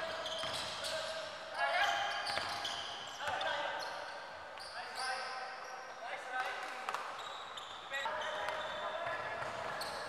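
Live game sound on an indoor basketball court: a basketball bouncing on the hardwood, with players' voices calling out over the play.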